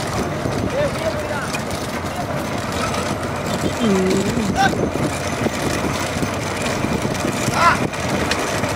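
Motorcycle engines running steadily behind a trotting bullock cart, with men's voices calling out over them: one drawn-out call about four seconds in and short high calls near the end.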